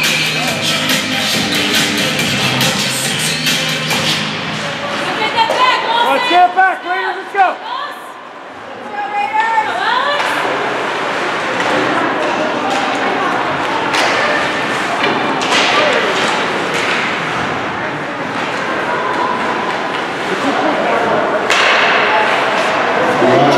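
Arena PA music with a steady beat, cut off about four seconds in as play restarts, then shouting voices and the echoing din of an ice hockey game in a rink, with scattered knocks of sticks and puck.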